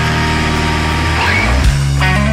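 Loud hard-rock band music with held notes over a steady low end.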